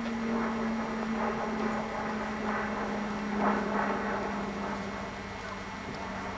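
A steady low drone that slowly drops in pitch, over a light background hiss.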